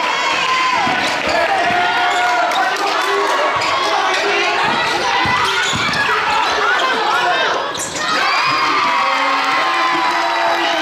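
Basketball game sound in a gym: sneakers squeak on the court floor again and again and a ball is dribbled, with players and spectators calling out.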